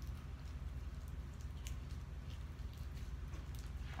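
Crunch slime with small beads mixed in being squeezed and kneaded by hand, giving faint, scattered crackles over a low steady rumble.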